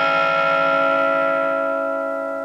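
Les Paul-style electric guitar through a Vox valve amplifier, a chord left ringing with several notes sustaining together. It holds steady, then slowly fades in the second second.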